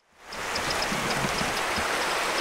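A shallow upland river running over stones: a steady rush of water that fades in a moment after the start.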